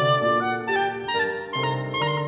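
Oboe playing a classical melody over piano accompaniment, the notes changing every fraction of a second above sustained low piano notes.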